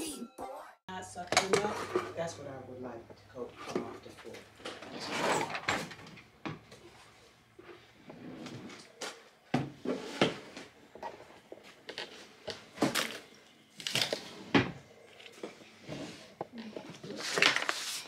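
Irregular knocks, taps and clatter of things being handled at a wooden desk, with low voices in the room.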